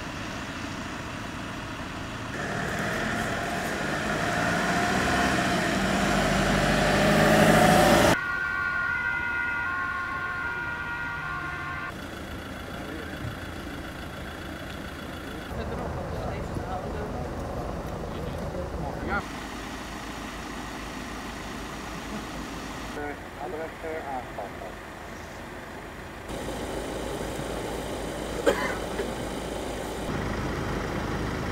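Outdoor sound at a road-accident scene in short cut-together shots: vehicle engines and traffic with voices, growing louder for several seconds and stopping abruptly about eight seconds in. A few seconds of steady high tones follow.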